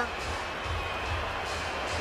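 Basketball arena background sound with faint music under it: a steady hum of noise with a low bass throb, no commentary.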